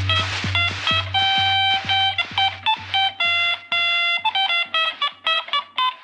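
Background music: a tune of short, bright pitched notes over a low bass that fades away in the second half, the music dropping briefly at the very end.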